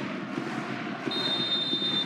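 Stadium crowd noise. About halfway through, the referee's whistle starts a long, steady high blast: the final whistle ending the match.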